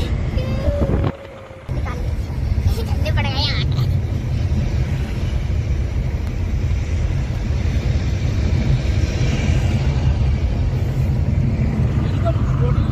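Car cabin noise on the move: a steady low rumble of engine and tyres on the road, heard from inside the car, with a short break about a second in.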